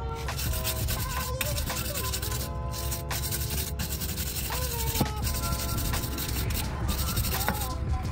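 Wire brush scrubbing rust off the wheel hub in repeated strokes, over background music.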